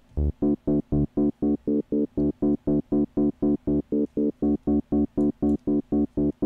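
Arturia Pigments software synthesizer playing an arpeggio triggered from the QuNexus RED's arpeggiator. Short, detached synth notes at an even pace of about four a second begin about a quarter second in.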